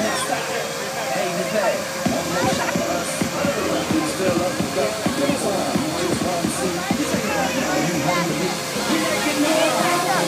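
Fake-snow machine blowing with a steady rushing noise, mixed with children's voices and background music.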